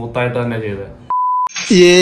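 A man's voice cut by a single short, steady beep of the kind used to bleep out a word, about a second in, with silence around the beep. A louder, higher-pitched voice starts near the end.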